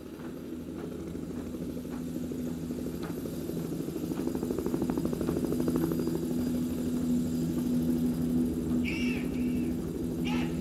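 A massed rock band holding a steady low chord that swells in loudness, with a rapid helicopter-like chopping sound over it. Near the end come short high shouted calls.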